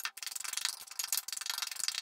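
Two table knives scraping and clicking rapidly against a stainless steel mixing bowl as they cut butter into flour for pastry dough, in a quick, irregular run of sharp ticks.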